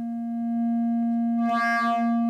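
Modular synthesizer oscillator holding a steady, unchanging pitch as a plain drone. About one and a half seconds in its tone briefly brightens with many added overtones, then settles back.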